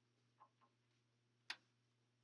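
Near silence: a faint steady low hum of room tone, with a single sharp click about one and a half seconds in and two faint soft sounds just before it.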